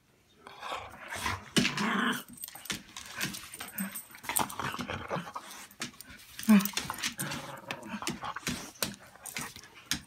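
German Shorthaired Pointer–Foxhound mix dog growling and snarling as it lunges and tussles at the legs of the person holding the phone, with rustling and scuffling against clothing and the phone; it is loudest about a second and a half in and again past the middle.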